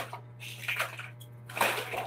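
Broom sweeping a floor: two quick swishing strokes, about half a second in and near the end, over a steady low hum.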